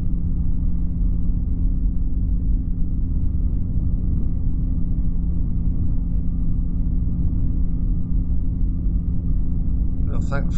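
Flexwing microlight trike's engine and pusher propeller droning steadily in level flight: an even low rumble with a constant low hum, no change in power.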